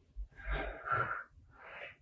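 A woman breathing audibly: a long breath about half a second in, then a shorter one near the end.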